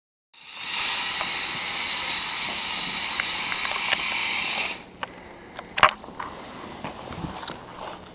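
Small electric motor and plastic gears of a toy radio-controlled truck running in reverse with a steady whirring buzz. The whirr cuts off suddenly just under five seconds in, followed by a few light clicks and one sharp knock.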